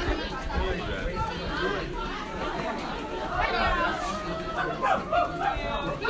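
Chatter of many students' voices overlapping in a crowded school hallway, with no single voice standing out.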